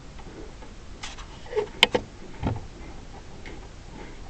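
Scattered clicks and knocks of students handling whiteboards and markers: a sharp click about two seconds in, the loudest sound, and a dull knock just after.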